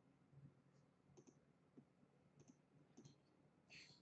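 A handful of faint, spaced computer mouse clicks over near silence, placing digitizing points one by one.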